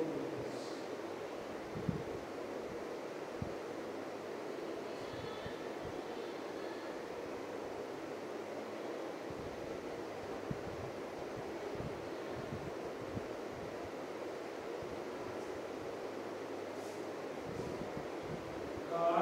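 Steady background hiss, with a few faint taps from a marker writing on a whiteboard.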